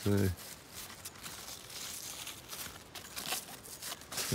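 Crystal apple cucumber leaves and vines rustling under a hand, a soft irregular crinkling with a few sharper crackles about three seconds in.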